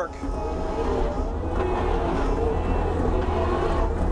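Kubota SVL75 compact track loader's four-cylinder diesel engine running steadily as the machine pivots on its rubber tracks.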